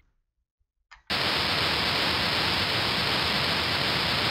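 Steady hiss of a noisy voice recording. It cuts to dead silence for about the first second, then comes back loud and even.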